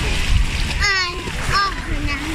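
A child splashing in shallow sea water, with a short high-pitched child's cry a little under a second in and a brief voice sound later.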